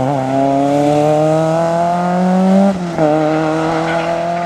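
Small hatchback rally car's engine accelerating hard away from a corner, its pitch climbing steadily, with one quick gear change a little under three seconds in before it pulls on again in the next gear.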